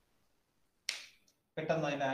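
A single sharp click about a second in, then a man's voice starting near the end.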